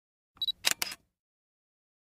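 A short intro sound effect about half a second in: a brief high beep followed by two quick clicks.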